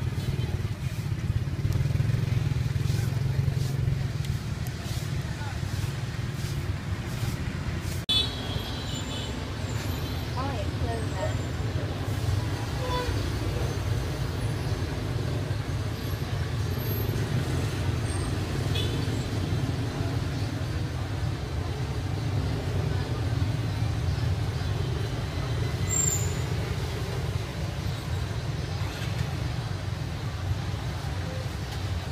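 Street ambience: a steady low rumble of passing traffic with background voices.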